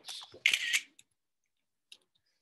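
A few short clicks and a brief breathy hiss in the first second, then near silence broken by one faint click near the end.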